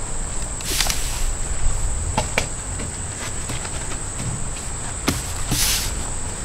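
Insects buzzing in one steady high tone, with two short rushes of rustling noise, about a second in and near the end, and a few soft knocks.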